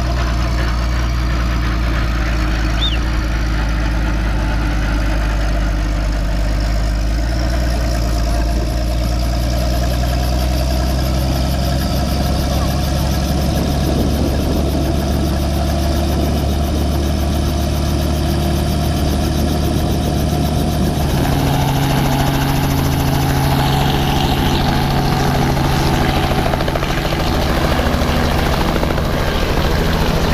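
Light helicopter's engine and rotor running steadily on the pad. About two-thirds of the way in the sound shifts and grows a little louder as power comes up for lift-off.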